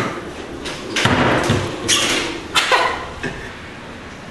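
Claw machine prize-chute flap being knocked and swung as a plush prize is pulled out: a handful of sharp thuds and knocks, then quieter.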